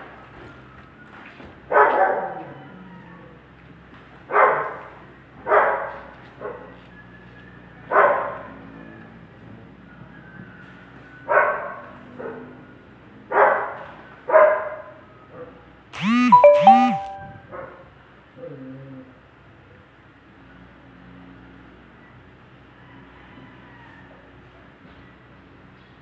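A dog barking in single short barks, spaced one to three seconds apart, over the first fifteen seconds. About sixteen seconds in comes a loud, high-pitched double cry that rises and falls in pitch.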